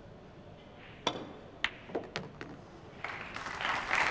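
Pool cue striking the cue ball about a second in, then several sharp clacks of pool balls colliding over the next second and a half. Audience applause starts and builds near the end.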